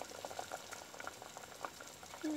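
Potato soup boiling in a stainless steel pot: soft, quick, irregular bubble pops.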